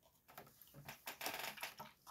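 Handling noise on a tabletop: a quick run of small clicks and scratchy rustling, densest in the second second.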